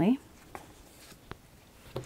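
Two faint, short clicks of oracle cards being handled, the end of a woman's sentence just before them.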